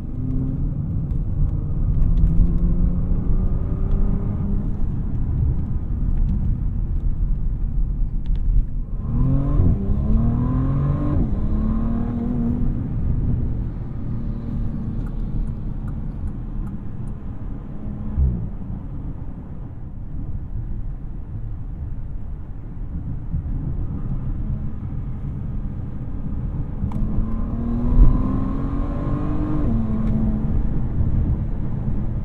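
Twin-turbocharged 6.0-litre W12 engine of a 2023 Bentley Flying Spur Speed in Sport mode, under steady road noise, pulling hard twice with its note rising and stepping through upshifts, about nine seconds in and again near the end. A short thump comes near the end.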